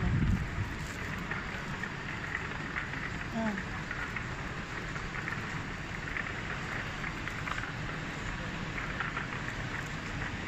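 Steady hiss of supermarket background noise, with faint voices now and then.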